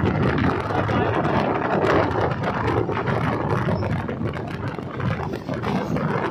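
Train running across a steel truss bridge, heard from an open coach door: a steady loud rumble with quick clattering throughout.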